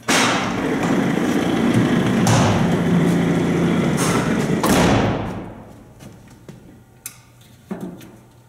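Doors of a vintage Otis freight elevator sliding, rattling and thudding for about five seconds, starting suddenly and fading out, followed by a couple of faint knocks near the end.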